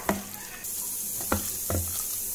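A hand squishing and mixing raw fish pieces with a spiced gram-flour batter in a stainless steel bowl, with a few soft knocks of the hand against the bowl. A steady faint hiss comes in about half a second in.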